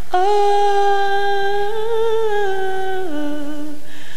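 A woman's gospel singing voice holds one long note with a light vibrato, then steps down to a lower note about three seconds in.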